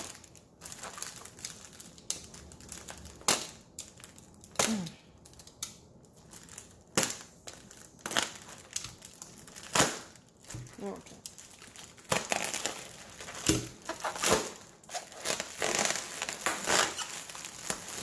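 Plastic air-cushion wrap crinkling and crackling as it is cut open with a utility knife and pulled apart by hand. Sharp crackles come every second or two at first, then come thick and fast in the last several seconds.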